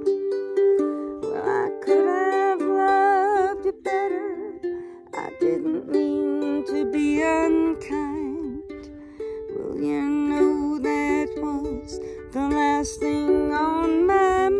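Ukulele strummed in chords, with a woman's voice carrying the melody over it in drawn-out phrases with vibrato.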